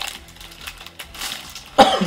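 A person coughs once, sharply, near the end.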